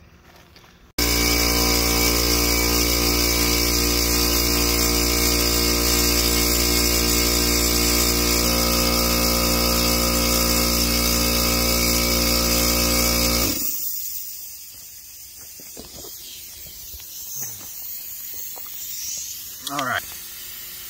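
Small portable air compressor starting abruptly about a second in and running steadily, pumping air into a gas line to bring it up to about 30 PSI for a pressure test. It cuts off about two-thirds of the way through.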